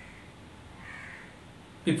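Quiet room tone with one faint, short bird call about a second in.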